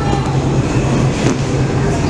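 Steady, loud low rumble and hum of a car ferry under way, with faint passenger voices in the background.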